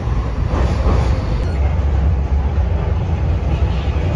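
Docklands Light Railway train running, heard from inside the carriage: a steady low rumble.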